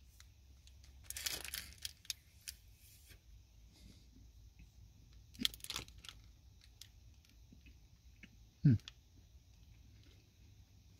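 A person eating a soft-baked biscuit: its plastic wrapper crinkles about a second in and again around five and a half seconds, with quiet chewing in between. Near the end comes one short hum of the voice, falling in pitch.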